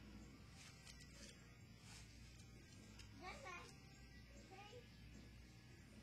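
Near silence with a low steady hum. A few faint knocks about a second in, from hands striking the arms of a homemade Wing Chun dummy, and a faint distant voice, like a child's, about three seconds in.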